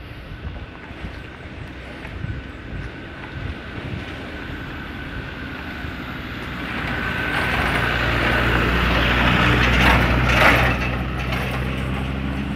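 A pickup truck coming up from behind and driving past: its engine and tyres on rough asphalt grow louder through the second half, are loudest about ten seconds in, then begin to pull away.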